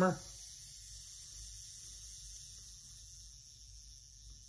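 The Pentax MG's wound-up mechanical self-timer running down after release: a faint, steady, high whir that slowly fades as the timer counts down to the shutter.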